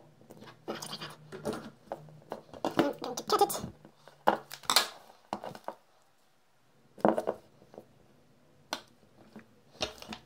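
Short clicks, taps and rustles from hands handling a taped pack of four 18650 lithium-ion cells while a wire is soldered onto its top. A faint low hum runs under them and stops about halfway, followed by a brief silent gap.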